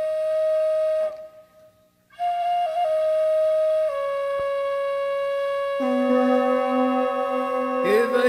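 Music: a flute-like wind melody of long, steady held notes, with a brief pause about a second in. A lower held note joins beneath it about six seconds in.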